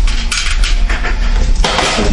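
Cardboard shipping box flaps being handled and folded open: rustling and scraping of cardboard with small knocks, and a louder scrape near the end.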